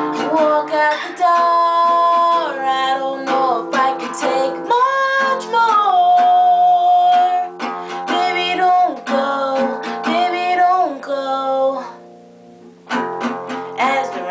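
A woman singing to her own strummed acoustic guitar, holding long notes that slide between pitches. Near the end the sound drops low for about a second, then the strumming starts again.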